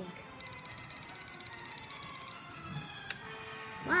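Darth Vader alarm clock's built-in speaker playing its recorded sound clip, set off by pulling a tab on the toy: a voice line in Spanish, with a high steady electronic tone over roughly the first two seconds.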